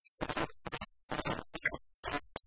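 Frame drum struck with two sticks, a run of quick strokes in uneven bursts with short gaps between them, as a percussion break in a film song.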